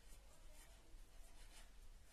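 Green felt-tip marker writing on paper: several faint, short, scratchy strokes as letters are written, over a steady low hum.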